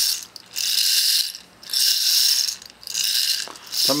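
Repeated short bursts of a scratchy, rattling hiss close to the microphone, about one a second, played as the test sound in a hearing check of a cranial nerve exam.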